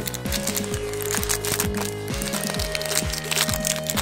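Foil wrapper of a Pokémon card pack crinkling and tearing as it is opened by hand, in a run of small crackles. Background music with held tones plays underneath.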